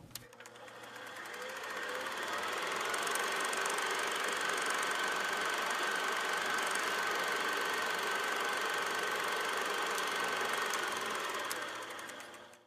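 A steady mechanical whirring clatter that fades in over about two seconds, holds level, and fades out at the end.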